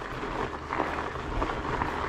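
Surly Ice Cream Truck fat bike's big tyres rolling and crunching over loose gravel and rock on a climb. It is a steady rough noise with a few faint knocks from stones and the bike.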